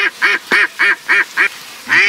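A rapid, evenly spaced series of loud duck quacks, about four a second, stopping about a second and a half in, with one more quack near the end.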